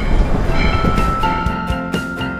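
Train running on its tracks, heard from an open passenger car as a steady low rumble; background music with a steady beat comes in about a second and a half in.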